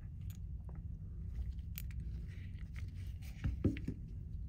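Faint handling noise: scattered light clicks and small scrapes as gloved hands move small airgun regulator parts and a plastic parts bag, over a steady low room hum.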